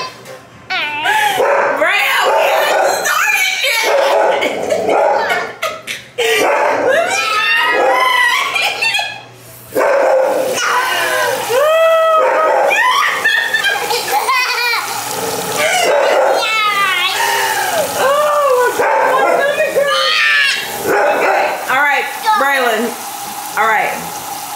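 Children's loud wordless cries, wails and yelps, over and over, reacting to an intensely sour candy, with a tap running at times.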